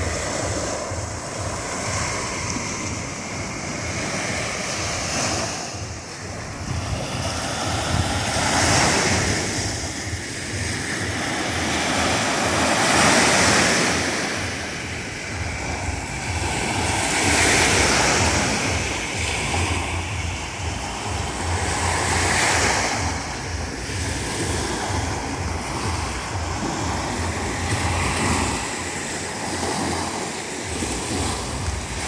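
Black Sea surf on a sandy beach: small waves breaking and washing up the shore in swells of foamy rush, one every four to five seconds.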